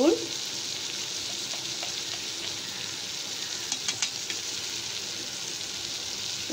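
Sliced onions, tomatoes and green chillies sizzling steadily in hot oil in a metal kadai, with a few faint clicks about four seconds in.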